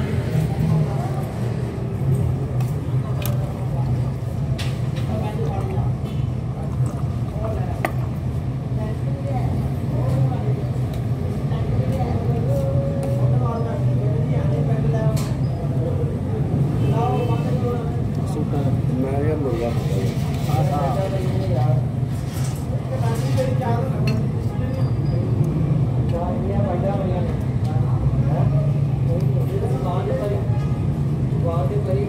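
Busy eatery ambience: indistinct background chatter from several people over a steady low hum, with scattered short clicks.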